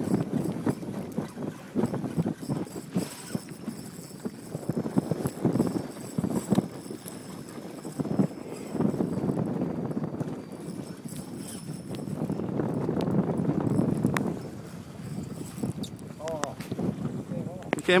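Spinning reel being cranked against a hooked fish, with water slapping at the boat hull and wind on the microphone: an uneven run of knocks and clicks over a low rumble.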